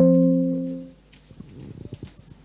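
A single chord-like musical tone struck sharply, ringing with several steady pitches and fading out within about a second, followed by a few faint knocks.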